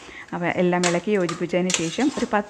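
A woman talking, starting about a third of a second in, over soft sounds of a hand mixing mashed jackfruit in an aluminium pressure cooker.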